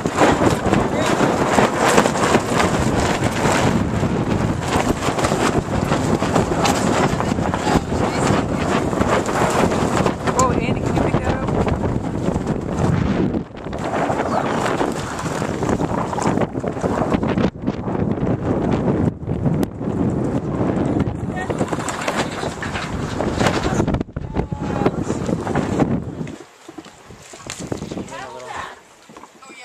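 Strong wind buffeting the camera microphone aboard a sailing catamaran under way, with the rush of water along the hulls. The noise breaks off abruptly a few times and falls away about two seconds before the end.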